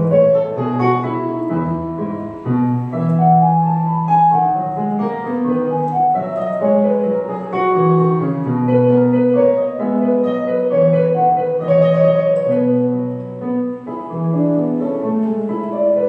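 Yamaha portable electronic keyboard playing a piano voice: a melody over held low chords, played live.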